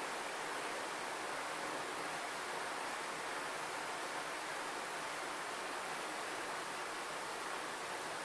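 Steady, even hiss of background noise with nothing else happening: the recording's room tone and microphone noise.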